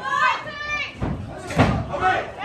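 Spectators and corners shouting in high voices, with one loud thump about one and a half seconds in from a strike landing on a fighter.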